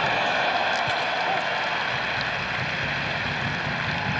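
Football stadium crowd noise: a steady wash of many voices, slightly louder in the first second.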